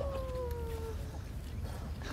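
A dog whining: one long call that slides slowly down in pitch and fades out about a second in.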